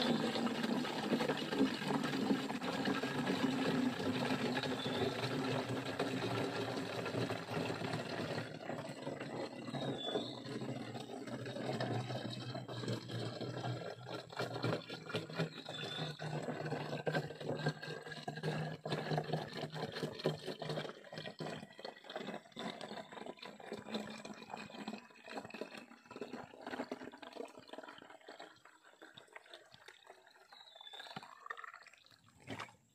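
Liquid poured in a thin stream from a large plastic jug into a small bottle, gurgling and splashing. Its pitch rises steadily as the bottle fills, and it grows quieter toward the end.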